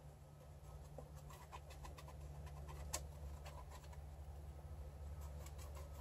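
Quiet room: a faint steady low hum with a few light clicks, one sharper click about halfway through.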